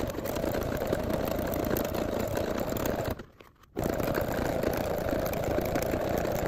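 Electric sewing machine running a single straight stitch through the layered fabric edge of an envelope, stopping for about half a second a little after three seconds in, then stitching on.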